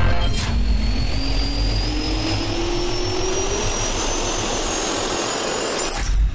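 Jet engine turbine spooling up: a slowly rising whine over a steady rush of air. It cuts off suddenly near the end.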